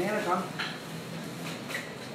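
A brief rising voice at the start, then a few light metallic clicks from hairdressing scissors.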